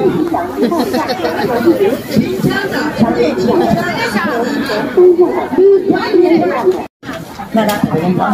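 Several people talking in a busy market, their speech overlapping and not clearly made out, with a sudden split-second drop-out just before the end.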